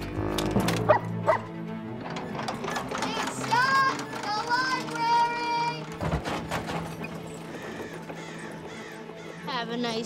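Film score music with a steady low held note, mixed with sound effects: a few sharp clicks about a second in and a thump about six seconds in.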